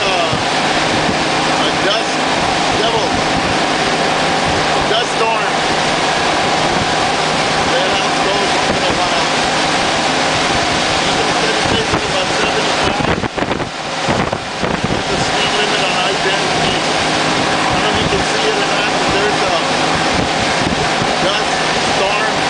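Honda Gold Wing motorcycle at highway speed: steady wind rush on the microphone and road noise over the even drone of its engine. The wind noise drops briefly about 13 seconds in.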